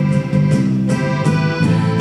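Live folk band playing an instrumental passage with no singing: sustained chords over a steady low beat about twice a second.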